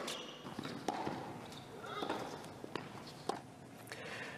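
A tennis rally in the arena's own sound: sharp racket strikes and ball bounces, about five over four seconds, over a faint crowd murmur with a few voices.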